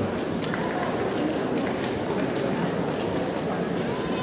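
Murmur of spectators in a large sports hall, with scattered light clicks of table tennis balls.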